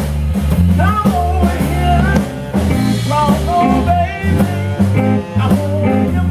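Live blues band playing: electric guitars, electric bass and drum kit. Over a steady low groove runs a lead melody of bending, wavering notes.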